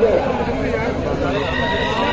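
People shouting and calling out across an open-air volleyball ground, with a long drawn-out call near the end.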